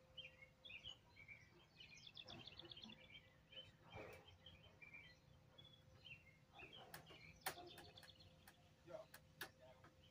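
Faint outdoor ambience with songbirds chirping on and off and a quick trill about two seconds in. A few sharp clicks come in the second half.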